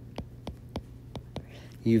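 Stylus tip tapping and scraping on a tablet's glass screen while writing a word by hand: about five light clicks.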